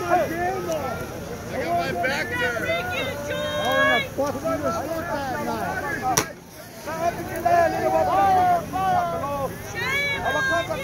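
A crowd shouting and calling out, many voices overlapping, with a few long held calls. A single sharp crack about six seconds in is followed by a brief lull.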